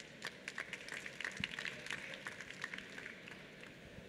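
Light, scattered audience applause of many quick, irregular claps, heard faintly and thinning out toward the end.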